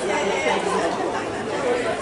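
Spectators chattering, several voices talking at once under a general crowd hubbub.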